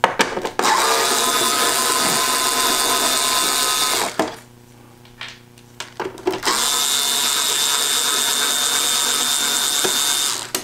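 Handheld power screwdriver with a quarter-inch bit running in two steady spells of about three and a half seconds each, backing long self-tapping screws out of the projector's main rear cover. A few short clicks come before and between the two runs.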